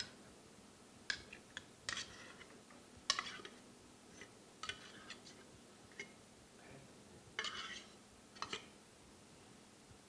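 Fork scraping and clinking against the inside of an opened metal tuna can as water-packed tuna is scooped out, in about a dozen short, scattered scrapes and clicks.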